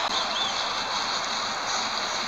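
Stadium crowd noise from a football broadcast: a steady, even wash of many voices with no single event standing out.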